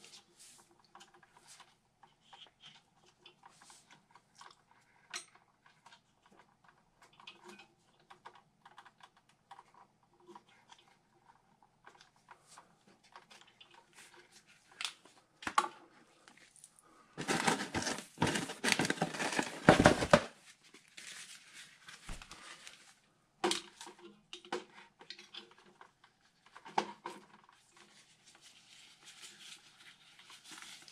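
Hands handling and cleaning an oil burner's cad cell: scattered small clicks and light rustles, with a loud crinkling rustle for about three seconds past the middle and a few sharper knocks.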